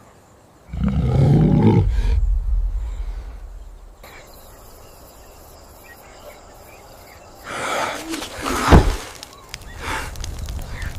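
A deep animal roar starts about a second in and fades out over about two seconds. A second loud roar-like sound with a sharp hit follows near the end.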